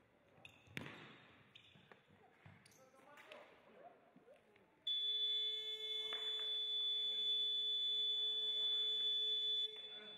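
Electronic buzzer sounding one steady tone for about five seconds, starting about halfway through and cutting off suddenly. Before it, faint thuds of a ball and feet on the sports-hall floor.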